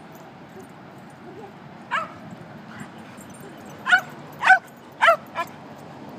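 A dog barking in short, sharp, high yips: one about two seconds in, then four more in quick succession over the last two seconds, the third of these the loudest.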